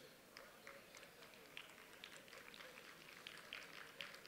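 Near silence: room tone through a podium microphone, with a few faint scattered ticks.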